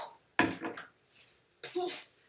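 A sudden burst of laughter from a young girl, then a short exclaimed "oh".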